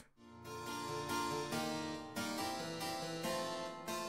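Harpsichord playing a short passage of chords and notes, coming in just after the start.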